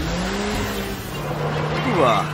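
Cartoon car engine sound effect as a vehicle speeds away: a steady engine tone that drops lower about halfway through and holds.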